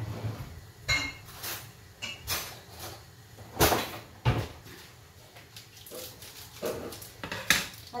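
Kitchenware being handled: a string of separate clinks and knocks of dishes and utensils, one ringing briefly about a second in, the loudest a little before the middle.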